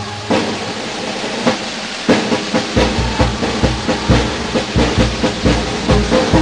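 Marinera brass band: the melody breaks off, leaving about two seconds of hissing noise, then the bass drum and percussion come back in about three seconds in with a steady lilting beat, three or four strokes a second, the brass faint underneath.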